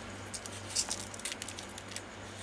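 Damp deli paper being torn by hand along a line wetted with water: faint, soft crackles and rustles as the softened fibres part into a frayed edge. A low steady hum sits underneath.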